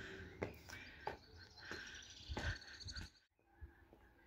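Soft footsteps on stone stairs, about one step every half second, with faint bird chirping. The sound cuts off suddenly about three seconds in.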